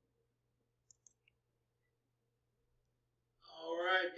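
Two faint, quick computer mouse clicks about a second in, over near silence with a faint low hum; a man's voice starts near the end.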